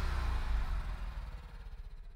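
The tail of an electronic dance music track fading out, leaving mostly a low buzzing bass by the end.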